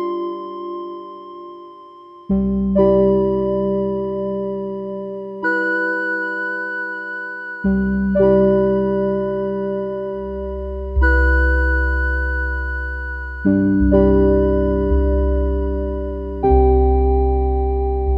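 Background music: slow electric piano chords, a new chord struck every few seconds and left to fade.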